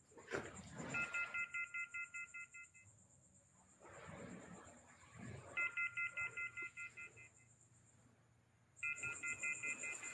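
An electronic beeping tone: a rapid, even train of pulses at a fixed pitch, about six a second, lasting roughly two seconds and coming three times with gaps of about two seconds, like a phone ringing.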